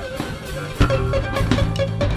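Free jazz improvisation on drum kit and bass: loose, irregular drum and cymbal strokes with short plucked bass notes underneath. It starts softly and picks up with a loud drum hit a little under a second in, after which the playing grows busier.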